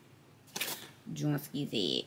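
A cardboard perfume box handled and turned over in the hands, with a short click about half a second in, followed by a brief murmured voice near the end.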